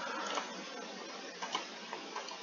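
A few faint computer-mouse clicks over the steady hiss of a poor microphone.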